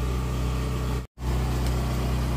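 A steady low mechanical hum, like an engine running at idle. It cuts out completely for a moment about a second in.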